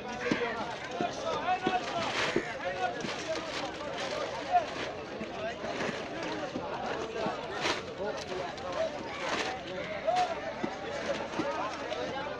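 Chatter of several people talking at once, no single voice standing out, with a few sharp clicks mixed in.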